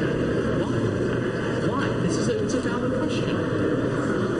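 Muffled, indistinct male voices under a steady background din, too unclear to make out words.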